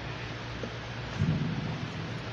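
Steady background hiss with a short, low thump a little over a second in.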